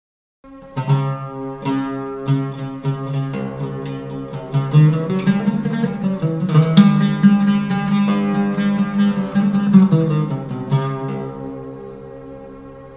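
Solo Egyptian oud playing an improvised taqsim in maqam Nikriz. Runs of plucked notes start about half a second in, and the last note is left ringing and fading near the end.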